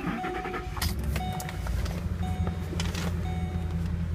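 A 2012 Ford Expedition's 5.4-litre V8 is cranked and catches about a second in, then settles into a steady idle, heard from inside the cabin. Over it the dashboard warning chime dings about once a second.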